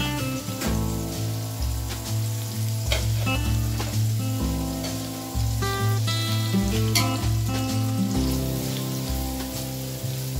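Background music with a strong bass line and changing notes, over sliced onions and whole spices sizzling as they fry in oil in an aluminium pot. A metal ladle stirs them in the second half.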